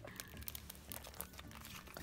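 Faint crinkling of the clear plastic packaging on sticker sheets as they are handled, with a few small ticks.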